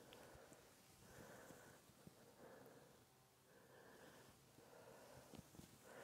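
Near silence: quiet room tone, with faint soft puffs of hiss about once a second.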